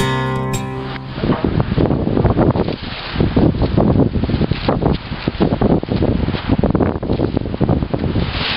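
Strummed guitar music ends about a second in. It is followed by loud, irregular rustling and crackling of a plastic sheet being pulled over apple-tree branches and tied down, with wind buffeting the microphone.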